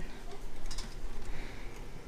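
A few light clicks and knocks of an electric hand mixer being handled and lowered toward a stainless steel bowl, before its motor is switched on.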